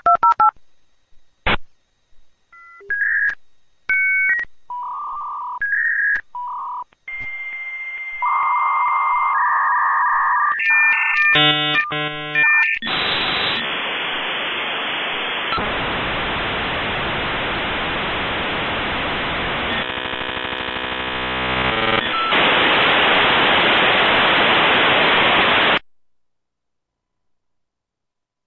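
Dial-up modem connecting. Touch-tone digits are dialled as short beeps over the first several seconds, then comes a steady tone and a rapid warbling handshake. After that, a loud hiss of modem noise runs for the last dozen seconds and cuts off suddenly at the end.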